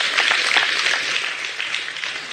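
Congregation applauding, fading away toward the end.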